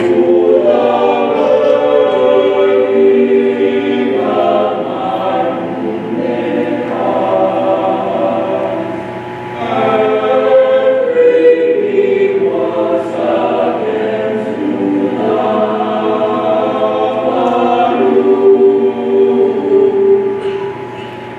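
Mixed choir of male and female voices singing a choral piece in parts, in phrases with a short breath about nine and a half seconds in.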